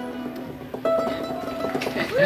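An acoustic string band of guitar, banjo and mandolin letting the last chord of a slow hymn ring out, fading, then a few soft plucked notes and a single held note coming in just under a second in.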